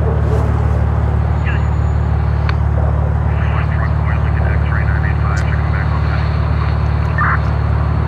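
A car's engine idling steadily, heard from inside the cabin as an even low drone, with a few faint clicks.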